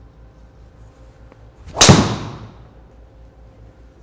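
Driver head striking a teed golf ball: one loud, sharp crack about two seconds in that dies away over half a second. It is a solid, well-struck hit.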